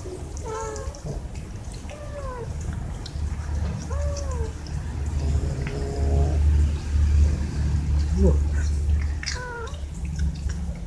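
Cats meowing, four rising-then-falling meows spread through the stretch, the last near the end. A low rumble runs under the middle part.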